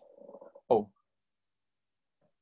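A man's short wordless vocal sounds: a faint hum trailing off, then one brief loud hesitation syllable just under a second in.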